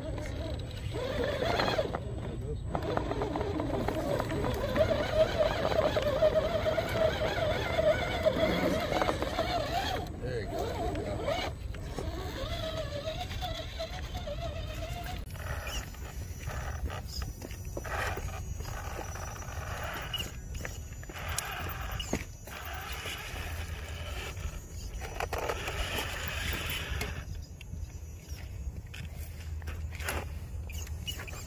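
Electric drive motor and gears of a small RC rock crawler whining as it climbs rock, the pitch wavering up and down with the throttle. In the second half the whine turns intermittent, mixed with clicks and scrapes of tyres on rock.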